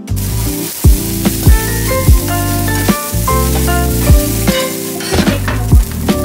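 Broccoli and garlic sizzling as they sauté in a stainless steel frying pan, under background music with a steady beat.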